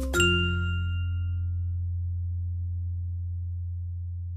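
Background music ending on a final chord, struck about a fifth of a second in: its high notes die away within a second or two while a low bass note holds on.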